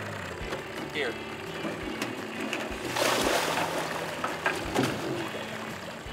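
Small tiller outboard motor on a jon boat running slowly at low throttle, a steady low hum. About three seconds in there is a short splash in the water.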